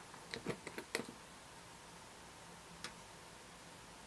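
Light clicks and taps of plastic model-kit parts being handled and fitted together: a quick run of about six clicks in the first second, then a single click near three seconds in.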